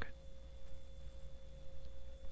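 Faint recording background: a steady thin tone and a low hum under a light hiss.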